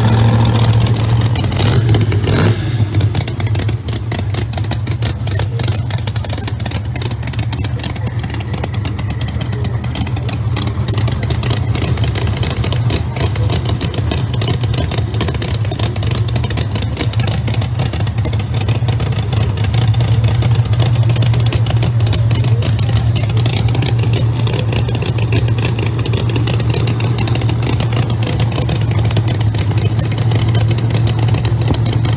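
Pro Mod drag car's ProCharger-supercharged V8 idling loud and steady at close range, a lumpy rumble of rapid, even firing pulses. A short louder blip comes about two seconds in.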